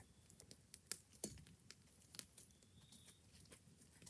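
Near silence with a few faint, scattered crackles from a wood fire burning in a fire pit.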